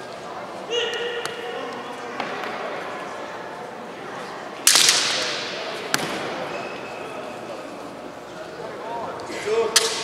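Kendo bout: a fencer's long kiai shout about a second in, then a loud, sharp crack of a strike about halfway that echoes through the large hall, a smaller click a second later, and another shout with sharp cracks near the end.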